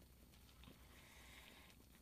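Near silence, with faint soft sounds of a mouthful being bitten from a large bacon cheeseburger.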